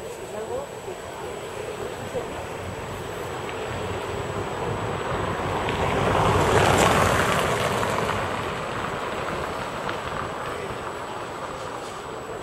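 A road vehicle passing along the street, its tyre and engine noise swelling to loudest about seven seconds in and then fading away.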